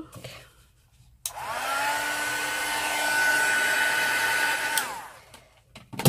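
Craft heat gun switched on about a second in: a motor whine that rises quickly to a steady pitch over a rush of blown air. It switches off near the end, the whine dropping as it stops. It is drying stamped ink.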